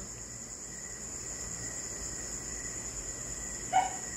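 Steady, high-pitched insect chirring, an unbroken drone that runs on under everything.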